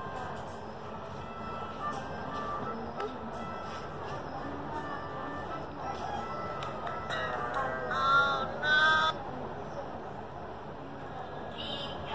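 A children's video playing through a smartphone's small speaker: music with voices, a louder sung or voiced passage about seven to nine seconds in.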